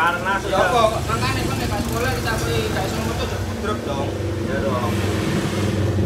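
A motor vehicle engine running steadily in the street, a low hum under people talking.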